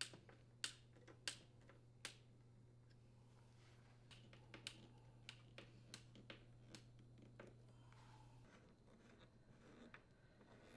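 Faint clicks and taps of a hand screwdriver seating in and turning screws on a dishwasher's metal door panel: three sharper clicks in the first two seconds, then a run of lighter clicks a few seconds later.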